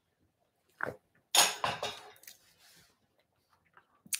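A person drinking from a mug: a brief faint mouth sound, then a louder breathy exhale about a second in that fades within half a second.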